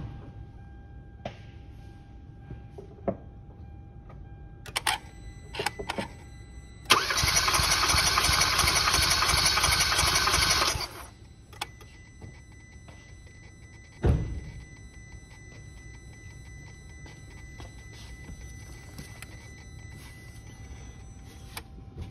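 Kia Soul's 1.6-litre four-cylinder engine being cranked over by the starter for about four seconds without firing, its fuel and spark disabled for a compression test. A single thud follows a few seconds later.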